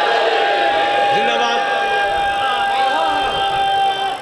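A man's voice through a microphone and loudspeakers holding one long sung note of a zakir's majlis recitation, with other voices of the gathering beneath it.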